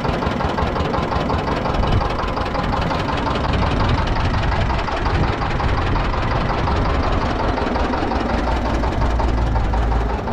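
Small engine driving a roadside sugarcane juice crusher, running steadily with an even, rapid knock.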